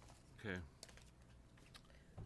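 Quiet meeting-room pause: a brief murmured voice about half a second in, then a few faint clicks.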